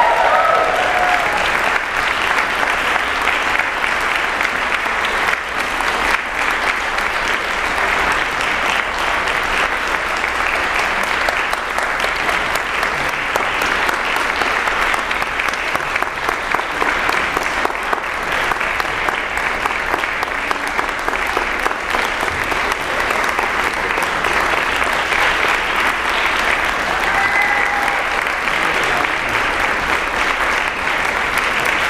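Audience applauding steadily, with a few short cheers rising above the clapping at the start and again near the end.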